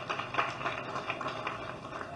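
Faint, steady background noise of a crowded hall, with a few soft clicks.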